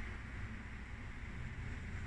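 Low steady background hum with a faint hiss: room tone, with no distinct event.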